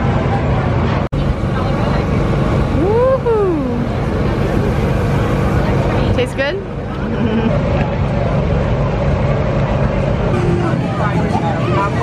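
Crowd chatter and general outdoor noise over a steady low mechanical hum. About three seconds in, a single voice gives a rising-and-falling call.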